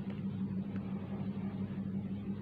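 A steady low hum of background machine or electrical noise with a couple of faint ticks.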